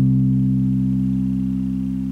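The song's final C chord held on electric bass with the accompaniment, one low sustained note that rings and slowly fades.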